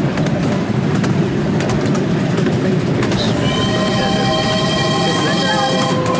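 Miniature steam train running along its track, with a steady rumble and rattle of wheels and carriages. About halfway, a high steady multi-note tone joins over the rumble and holds for about three seconds.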